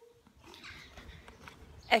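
Faint outdoor street background noise with a low rumble, after a brief near-silent moment at the start. A woman starts speaking right at the end.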